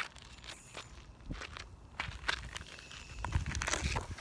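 Footsteps and scattered knocks close to a phone microphone lying on the ground, as a person walks up to it and moves about beside it. Heavier low thumps come about a second in and again near the end.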